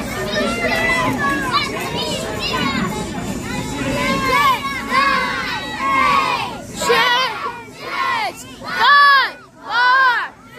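Crowd of children shouting and cheering together. Near the end it turns into loud repeated shouts in unison, about one a second.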